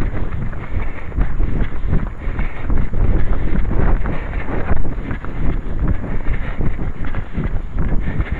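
Wind buffeting a running headcam's microphone, a loud low rumble broken by irregular thuds from the wearer's jogging stride.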